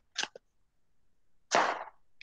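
Cardboard egg carton being torn apart by hand, heard as a brief crunch just after the start and a louder, longer tearing crunch about a second and a half in.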